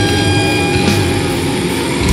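Death metal recording with heavily distorted electric guitars holding a long droning note over drums and bass, with a rising pitch slide near the end.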